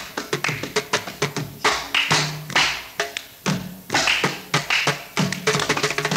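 Mridangam played without voice: crisp slaps and taps mixed with ringing, pitched strokes, quickening into a dense rapid run near the end.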